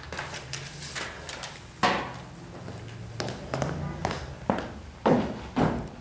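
Irregular series of taps and knocks, with a few sharp, louder thumps about two seconds in and twice near the end.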